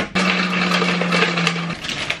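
Countertop blender motor running in one short burst of about a second and a half on ice cubes in the jug, a steady hum under a loud grinding rush, then cutting off suddenly.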